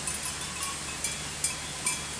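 Quiet outdoor background with a few faint, short ticks scattered through it.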